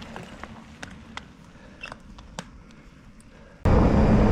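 Fat-tire mountain bike rolling down a damp dirt road: a low rumble of tyres with scattered small ticks and crackles of grit. About three and a half seconds in the sound cuts abruptly to much louder rumbling wind and road noise with a steady low hum.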